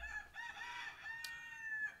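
A long pitched animal call: a short first note, then a held note lasting about a second and a half.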